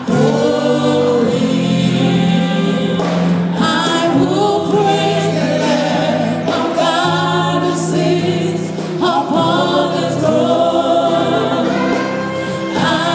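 Live gospel music: a female lead singer with a group of backing singers over a band accompaniment, in a song sung steadily throughout.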